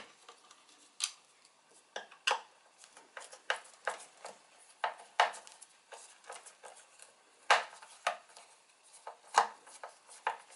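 Cross-head screwdriver unscrewing screws from a subwoofer's back panel: irregular light clicks and ticks of metal on screw heads, with a couple of sharper clicks near the end.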